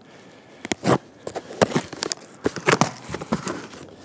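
Packing tape being slit and torn off a cardboard box, the cardboard flaps crinkling: an irregular run of sharp crackles and snaps.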